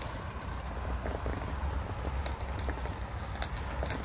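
Delivery truck's engine running, a steady low rumble.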